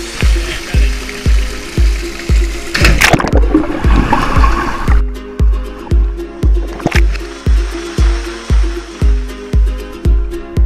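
Electronic dance music with a steady deep kick drum at about two beats a second under sustained synth notes. A dense wash of noise swells in about three seconds in and cuts off about five seconds in.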